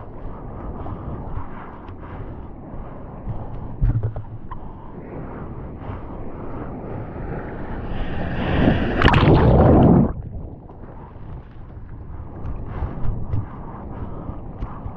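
Seawater sloshing and splashing against a GoPro while a bodyboarder paddles out. A louder rush of breaking wave water builds about eight seconds in and cuts off suddenly about two seconds later.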